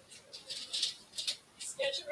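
Soft, indistinct speech, mostly breathy and hissing, with a clearer voice coming in near the end.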